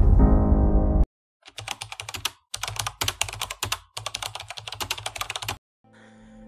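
Intro music that cuts off suddenly about a second in, followed by fast typing on a computer keyboard: rapid key clicks in three quick runs with short pauses between them.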